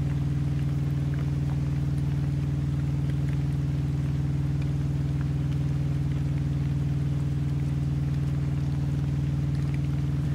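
Steady, unchanging low hum of a semi-truck's idling engine, heard from inside the sleeper cab.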